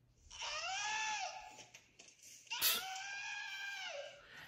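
A man screaming "Ah!" twice, two long high-pitched yells, the second starting about two and a half seconds in, heard from the played video's audio.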